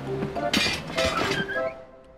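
Cartoon sound effect of something falling off a small wagon and clattering on the ground, a short burst of clinking starting about half a second in, over background music.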